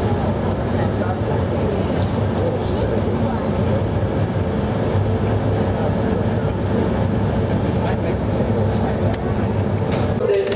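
Steady low roar of a glassworks furnace and its blowers, with a faint constant hum and a murmur of voices underneath.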